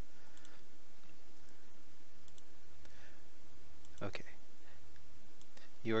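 A few computer mouse clicks, the sharpest about four seconds in, over a steady low hum.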